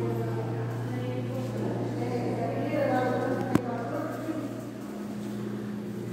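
Indistinct voices talking over a steady low hum, with one sharp click about three and a half seconds in.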